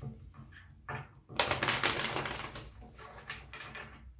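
A deck of tarot cards being shuffled by hand: a dense run of rapid card flicks about a second and a half in, lasting about a second, with a few scattered flicks around it.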